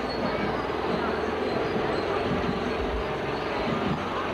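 Chatter from a crowd of street spectators over a steady mechanical drone.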